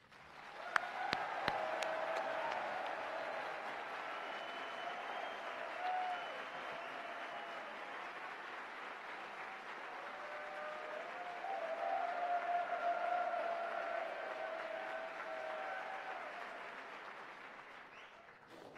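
Applause from a large audience filling an auditorium, starting just after the speaker is called to the stage. It holds steady, swells again about two-thirds of the way through, then dies away near the end.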